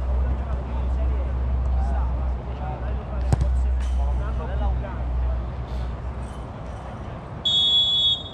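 Players' voices call faintly across a football pitch over a low rumble, with a sharp knock about three seconds in. Near the end a referee's whistle gives one short steady blast, the signal for the free kick to be taken.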